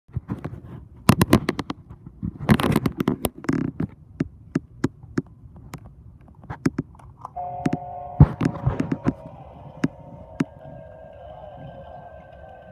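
Scattered sharp clicks and knocks, then about seven seconds in a steady eerie droning tone starts up and holds, with a higher tone joining near the end. The drone is the soundtrack of the Spirit Halloween Limb Eating Zombie Boy animatronic as it is triggered.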